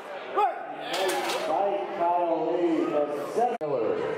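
Several men shouting encouragement at a lifter straining through a heavy bench press, with long drawn-out yells. The sound cuts off abruptly near the end and gives way to quieter hall murmur.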